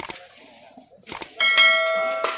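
A notification-bell chime sound effect rings out about a second and a half in, the loudest thing heard, and fades away slowly. It comes just after a couple of short sharp clicks.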